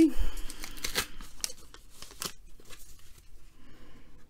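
A trading-card pack wrapper being torn open by hand: crackly tearing and crinkling, busiest in the first two seconds, then a few fainter crackles.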